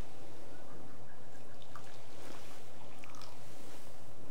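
Hot water poured from a bamboo tea ladle (hishaku) into a tea bowl, with a few small drips near the middle, over a steady low hum.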